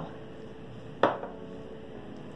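A single sharp clink of dishware about a second in, fading quickly, over faint background music with held notes.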